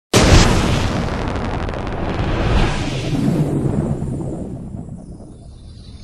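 Logo-intro explosion sound effect: a sudden boom right at the start, then a long rumbling tail that swells again about two and a half seconds in and fades away near the end.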